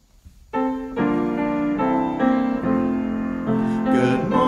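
Piano playing the introduction to a children's song: after a brief near silence it comes in about half a second in, with held notes changing every half second or so.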